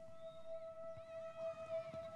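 Quiet opening of an indie pop song: one steady held tone with faint sliding, warbling pitches above it and a low crackle beneath.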